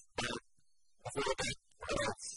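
A man lecturing in three short phrases with pauses between them.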